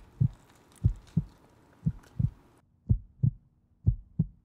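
Heartbeat sound effect: pairs of low thumps, lub-dub, repeating about once a second.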